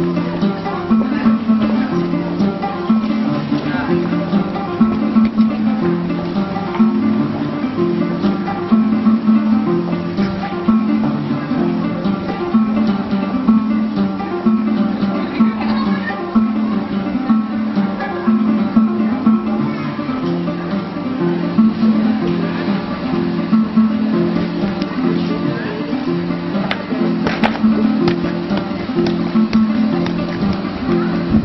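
Music led by a plucked acoustic guitar, with steady, repeating notes.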